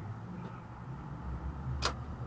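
Low, steady rumble of a car heard from inside the cabin as it starts rolling slowly, with one sharp click near the end.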